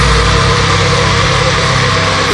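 Heavy metal music: low-tuned, distorted electric guitars hold a sustained chord, with no vocals.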